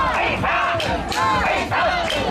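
Mikoshi bearers shouting a repeated call together as they carry a portable Shinto shrine: many voices at once, loud and continuous.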